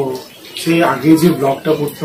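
A man's voice speaking after a brief pause.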